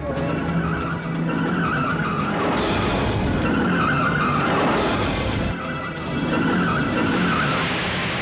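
Vehicle tyres screeching in several long, wavering waves with engine noise: a vehicle skidding, as in a road crash. Dramatic background music runs underneath.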